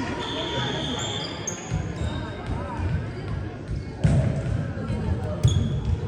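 Volleyball being struck in an echoing gym: two sharp smacks about a second and a half apart in the second half, over thuds of play and short high sneaker squeaks on the hardwood floor.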